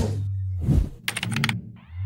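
Animated intro sound effects: a low bass tone, a single thump a little under a second in, then a quick run of keyboard-style clicks.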